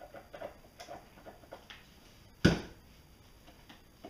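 Dull scissors snipping excess eel skin from the front of a plug: a run of small faint clicks, then a single loud sharp knock about two and a half seconds in.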